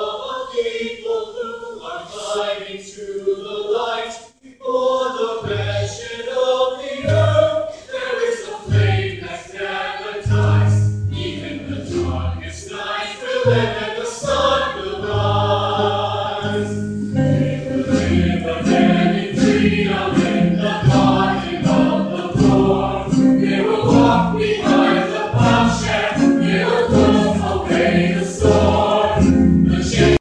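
Stage musical cast singing together as a full chorus with instrumental accompaniment, heard through a cell phone's microphone. Low accompanying notes come in about five seconds in, and the singing swells louder and fuller through the second half.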